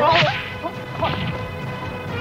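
Dubbed fight sound effects: a loud swish-and-whack hit at the very start, then a couple of lighter hits, over steady background music.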